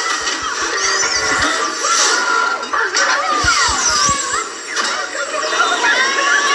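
Cartoon soundtrack: music with many quick sliding, wavering high pitches over it, and short low thuds near the start and again around the middle.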